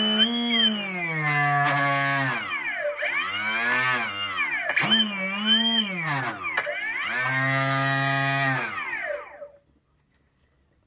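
DPower AL3548-4 brushless outrunner motor driving the propeller shaft of an RC model boat, whining as the throttle is worked: the pitch holds, falls, dips and climbs several times, then runs steady before winding down and stopping about nine and a half seconds in.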